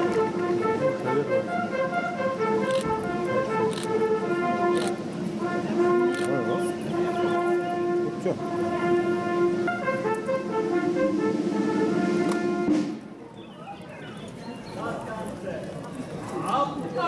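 Military band music with long held chords, stopping abruptly about thirteen seconds in; a murmur of voices from the crowd follows.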